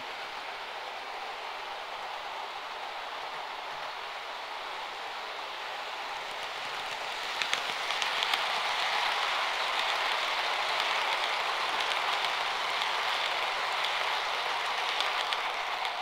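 Model train of a Class 67 diesel locomotive and eight coaches running along the layout's track: a steady rushing rattle of wheels on rails. It grows louder about seven seconds in, as the coaches pass close by, with a few clicks.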